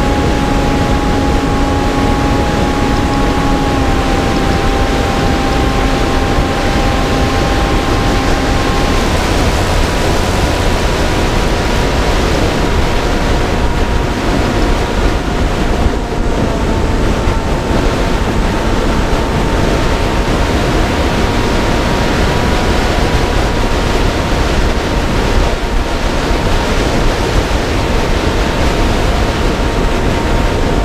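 Wind rushing over a camera carried on a small aircraft in flight, with the steady whine of its motor underneath. The whine steps down in pitch twice in the first ten seconds and then holds steady.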